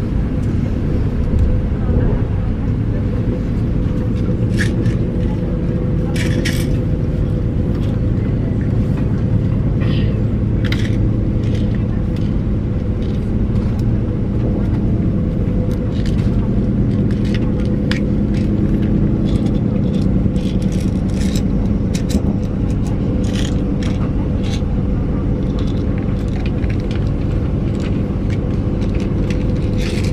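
Passenger train in motion heard from inside the carriage: a steady low rumble with a faint constant hum, and scattered short clicks and rattles.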